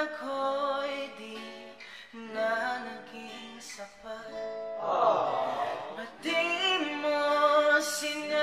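A man singing a slow ballad to his own acoustic guitar, in phrases with short breaks between them.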